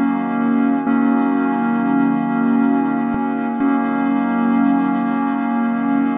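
Instrumental music: a sustained, brass-like synth chord held steady, with no drum beat.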